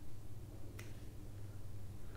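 Quiet room with a steady low hum and one short, sharp click a little under a second in.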